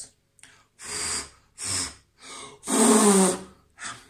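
A man blowing puffs of air from his mouth onto his flexed biceps: four separate breathy blows, the last the longest and loudest.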